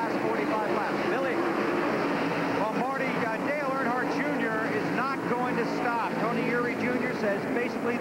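Engines of NASCAR Busch Grand National stock cars, V8s, droning steadily as the cars race around the oval, under a broadcast commentator's voice.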